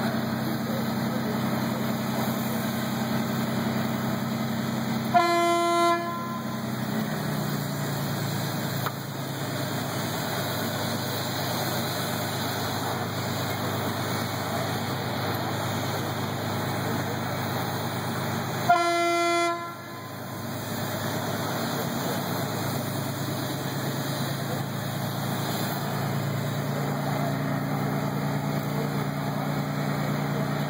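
A horn sounds two blasts of about a second each, one about five seconds in and one about thirteen seconds later, over a steady low hum of running machinery. The hum drops away after the first blast and comes back near the end.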